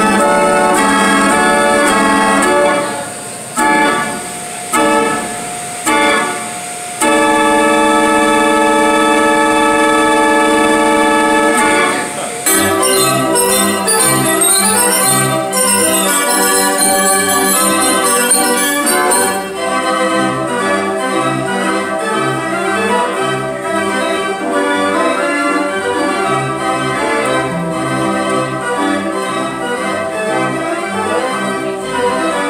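Stinson carousel band organ playing: held chords broken by a few short gaps, then one long held chord, then after about twelve seconds a quicker tune over a pulsing bass line, with bright high notes for several seconds. A rider calls the organ's music off tune and weird.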